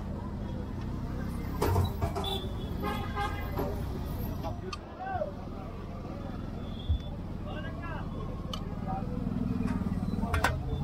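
Busy street ambience with steady traffic rumble, car horns tooting and voices in the background, and a couple of short knocks.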